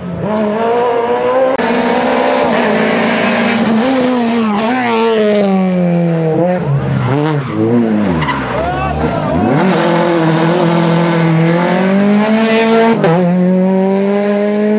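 Peugeot 208 rally car's engine running hard through a tight bend: the revs rise and fall as it slows, drop low through the turn about eight to nine seconds in, then climb again under acceleration, with a gear change near the end.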